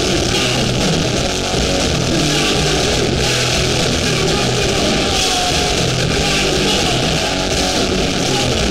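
Hardcore band playing live at full volume: distorted electric guitars, bass and drums in a dense, unbroken wall of sound.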